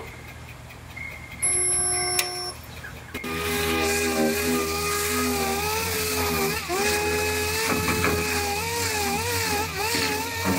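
A resistance spot welder fires once on the sheet-metal bed corner, a loud steady hum lasting about a second. Then a small air grinder with an abrasive pad whines steadily, its pitch wavering and dipping as it is pressed onto the welded seam to clean it.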